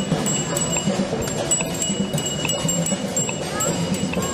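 Many bicycle bells ringing over and over, short overlapping dings at no set rhythm, as a large group of cyclists rides past. Under them, a steady background noise from the passing crowd.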